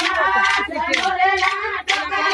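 Group of Banjara women singing a Holi folk song together, with steady sharp claps keeping time about two to three times a second.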